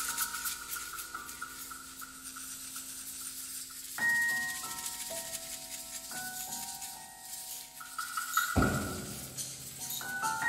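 Quiet instrumental passage from an electro-acoustic chamber ensemble, with a soft rattling hand-percussion texture and held ringing notes that come in about four and six seconds in. A short low thump comes near the end.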